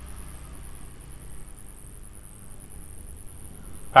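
Quiet, steady background ambience: a low rumble under a faint, steady high-pitched buzz, with no distinct events.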